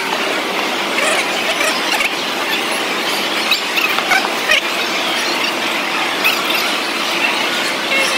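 Busy food-court hubbub: a steady din of the crowded hall with many short, high squeaks scattered through it.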